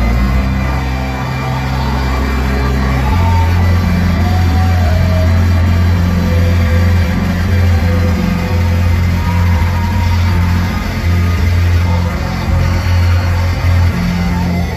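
Loud live band music played through a club PA, with sustained low bass notes that drop to a lower pitch about three seconds in, heard from the audience floor.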